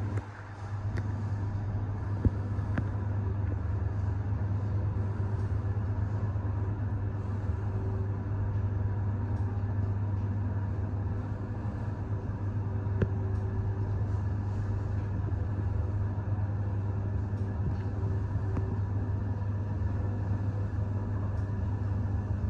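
Fujitec ZEXIA traction lift car travelling in its shaft at 60 m/min, heard from inside the car: a steady low hum and rumble with faint steady tones, and a couple of small clicks.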